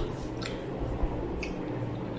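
Eating by hand from steel plates: fingers squishing and mixing rice and curry, with a few short wet clicks from chewing.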